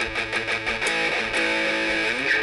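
Electric guitar picking a low note on the bass strings with quick, even down-up pick strokes, about six a second, then ringing a held note in the second half.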